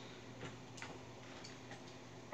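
Faint, irregular light clicks of coins being handled in a container, over a low steady hum.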